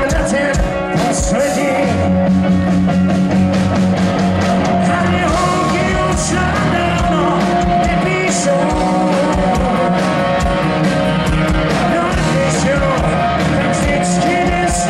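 A rock band playing live, with drums, bass and guitar and a male singer over them, at a steady loud level.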